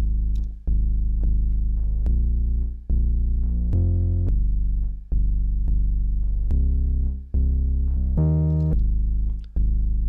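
Synth bass line from Ableton Live 12's Meld instrument on a monophonic bass preset, playing one low note at a time in a steady run of held notes that change roughly every second, with one brighter, buzzier note a little after eight seconds in. Probability groups pick a single random note from some of the chords.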